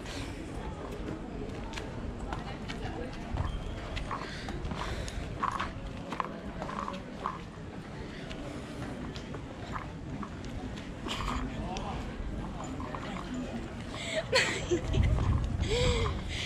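Busy pedestrian-street ambience: a murmur of distant passers-by's voices over a steady low rumble, with a run of short, soft knocks like footsteps on the paving stones partway through. A girl's voice says 'Nei' near the end.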